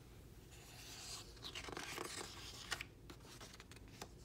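Faint rustle of a hardcover picture book's paper page being turned by hand, lasting about two seconds, with a small tap near the end as the page settles.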